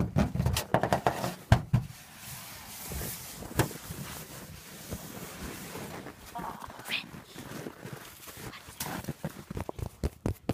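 Close-up handling noise at a phone's microphone: hands crunching snow and rubbing jacket fabric. It begins with a quick run of sharp clicks and crackles, turns into a softer rustling hiss, and more clicks come near the end.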